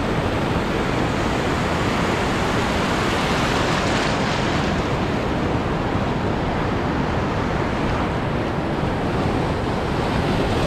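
Heavy ocean surf breaking and washing up the beach in a steady, unbroken rush of water.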